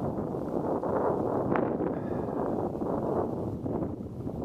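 Steady wind noise on the microphone with water lapping against a kayak hull on choppy water, with one brief sharp sound about one and a half seconds in.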